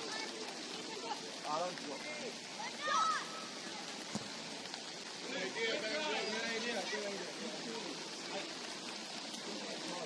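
Steady hiss of rain falling, with voices of players and spectators calling out across the field. There is one louder shout about three seconds in and a burst of several voices around six seconds.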